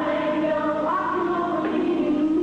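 Female gospel vocal group singing live in close harmony, holding long notes that step to a new pitch now and then.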